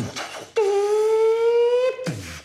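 Beatboxing: a few short percussive mouth sounds, then one loud held vocal note, about a second and a half long. The note rises slightly in pitch and cuts off suddenly.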